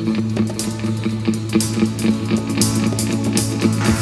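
Band intro led by a strummed acoustic guitar, steady rhythmic strokes over a held low note.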